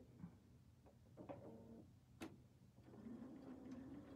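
Near silence: room tone with faint handling sounds and a single light click a little over two seconds in.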